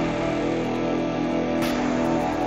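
Electric guitar ambient soundscape: a dense, steady drone of layered sustained notes built up with looping and effects, with a sharp scratchy pick attack near the end.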